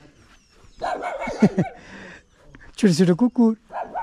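Puppies barking in two short spells, about a second in and again near the end, some calls sliding sharply down in pitch.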